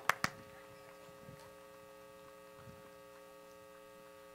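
Steady electrical mains hum from the public-address system, several steady tones at once. It opens with two sharp knocks a quarter-second apart.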